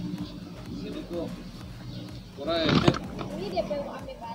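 Two people talking briefly, a man and a woman, with the loudest words about two and a half seconds in.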